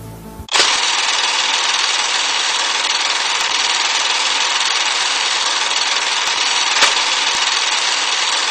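Loud, steady hissing noise effect that starts abruptly about half a second in and holds level, with a single click near the seven-second mark.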